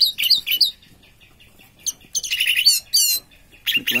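Orange-headed thrush singing: short phrases of rapid, sweeping whistled notes, at the start, again about two seconds in, and once more just before the end, with brief pauses between.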